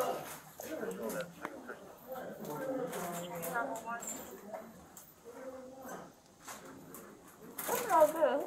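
Indistinct voices talking in the background, with a few short clicks and knocks of handling, the strongest near the end.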